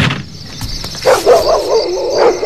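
A sharp click, then from about a second in a quick run of short yelping animal calls, about four or five a second, over a steady high chirring.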